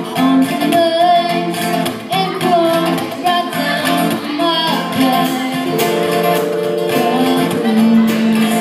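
A small indie band playing live. A woman sings held, wavering notes over guitar, a Nord Electro 2 keyboard and drums.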